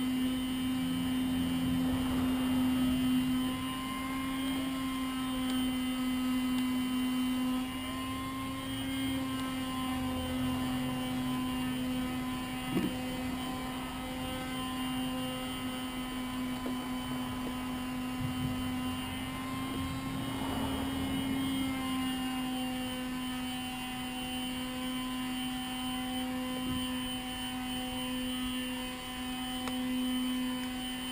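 A machine running steadily in the background, a constant buzzing hum. A few faint clicks from hand work on the saw's small parts, the sharpest about thirteen seconds in.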